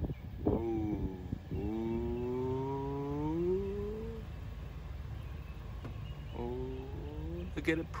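A person's voice making drawn-out, wordless held tones: a short one about half a second in, a long one slowly rising in pitch from about one and a half to four seconds, and another shorter one near the end.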